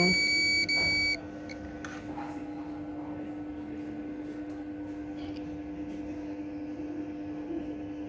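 Digital multimeter's continuity buzzer giving a high, steady beep for about a second, broken once, the sign that the capacitor under test is shorted to ground. After that only a low steady hum.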